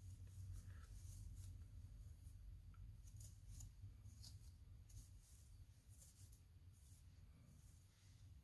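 Near silence: faint, scattered scratching and rustling of a wide-tooth plastic comb and fingers working through wig hair, over a low steady hum.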